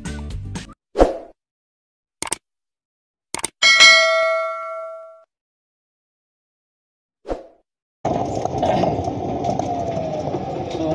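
The music ends, then a few clicks and a single bell ding that rings out and fades over about a second and a half: the sound effects of a subscribe-button and notification-bell animation. About eight seconds in, steady machine noise with a wavering whine begins, an electric warehouse material-handling truck running.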